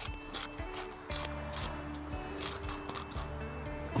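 Background music with soft held notes, coming in about a second in, over light repeated crunching of salt being ground from a mill into a steel pot of fish.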